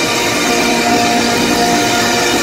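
Heavy metal band playing live and loud, a distorted electric guitar holding long sustained notes.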